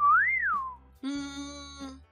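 A whistled note that slides up and back down, followed about a second in by a steady held musical tone lasting just under a second.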